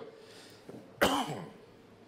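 A man coughs once, about a second in, with a sharp start that trails off falling in pitch.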